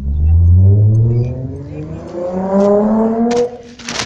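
An engine accelerating, its pitch rising steadily over about three seconds and loudest at the start. A short clatter follows near the end.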